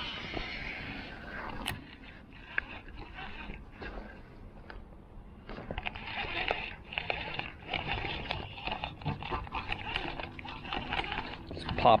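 Fishing cast and retrieve with a baitcasting reel: a short whir of line going out at the start, then the lure being reeled back in with a run of light clicks and ticks from the reel.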